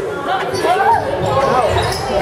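A basketball game on a hardwood gym court: the ball bouncing and sneakers squeaking in short bursts as players run up the floor, over the voices of spectators.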